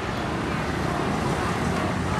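Steady street traffic noise: a continuous low rumble of passing road vehicles.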